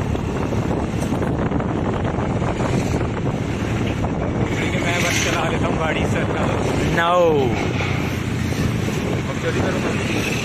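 Wind rushing over the microphone of a moving Honda scooter at about 40 km/h, with engine and road noise underneath. A brief shouted call rises above it about seven seconds in.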